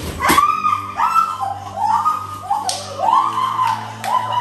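Young women shrieking and squealing in excitement, a quick run of short high-pitched cries, over background music with a steady low tone; a brief thump right at the start.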